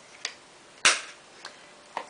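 A faint click, then one sharp, loud clack a little under a second in, as a plastic eyeshadow palette case is handled.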